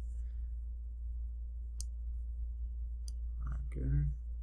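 Computer mouse clicking a few times, sharp single clicks about a second apart, over a steady low hum.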